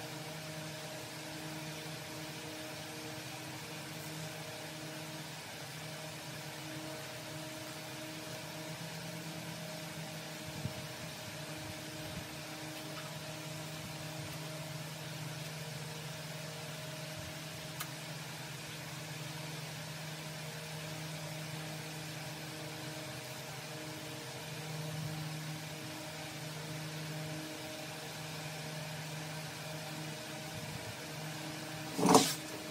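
Steady machine hum with a low drone and an even hiss, like a fan or motor running in a workshop. Two faint clicks come about 11 and 18 seconds in.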